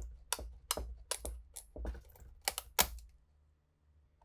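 Sharp wooden clicks and knocks, about a dozen at uneven spacing, as a broken piece of an old wooden case is handled; they stop about three seconds in.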